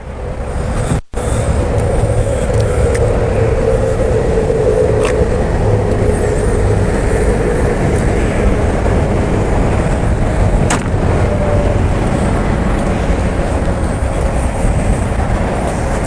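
Steady motor-vehicle rumble: a low drone with a constant hum running through it, cut off for a moment about a second in.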